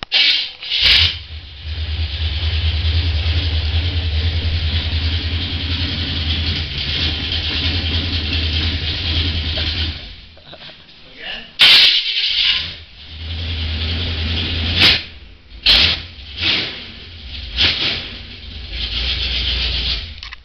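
A 1951 GMC truck engine being started, then running with a steady low rumble. The rumble drops away about ten seconds in and comes back a few seconds later, with several loud short bumps along the way.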